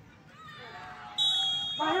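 A whistle blown once: a single steady, high-pitched blast of under a second, starting just past a second in. Shouting voices follow near the end.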